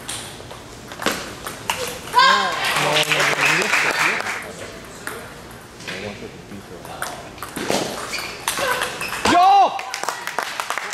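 Table tennis rally: the celluloid ball clicks off the paddles and the table again and again. Voices shout partway through, and near the end comes one loud short shout as the point is won.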